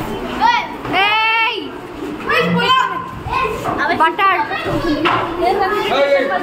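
A crowd of excited schoolchildren shouting and calling out, high voices overlapping in repeated bursts over general chatter.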